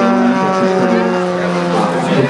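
Large-scale RC Pitts Special biplane's 3W two-stroke petrol engine and propeller droning steadily in flight, the pitch sinking slightly.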